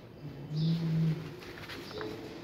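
Sheets of paper rustling as a stack of printed forms is leafed through. A low steady hum lasting about half a second sets in about half a second in and is the loudest sound.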